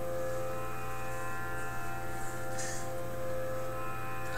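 A steady musical drone of several held notes, unchanging in pitch, sounding on its own under a pause in the talk.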